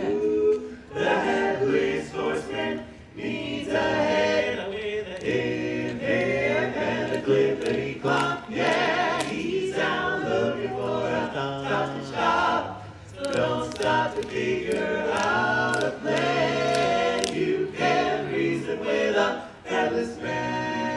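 Male barbershop quartet singing a cappella in close four-part harmony, with a steady bass line under the melody and brief breaths between phrases.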